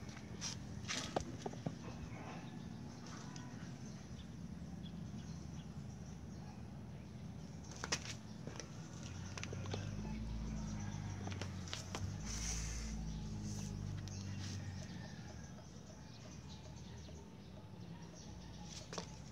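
A few light knocks and rustles from an oil filter and cardboard being handled on a table, over a steady low hum.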